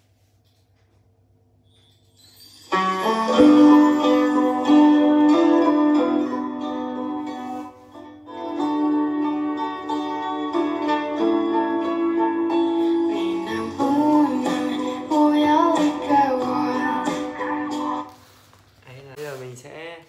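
Recorded music played from a phone through an electric đàn bầu's built-in amplifier and speaker, testing its music-playback function. It starts about three seconds in, dips briefly near the middle and cuts off near the end, with gliding pitches in the last few seconds.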